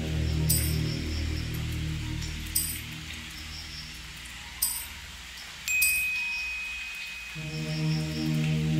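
Ambient electronic background music made in GarageBand: a low sustained drone that fades away in the middle and swells back near the end, with short high chime strikes every couple of seconds and a thin steady high tone coming in just past halfway.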